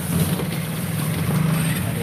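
A steady low mechanical hum, like an idling engine.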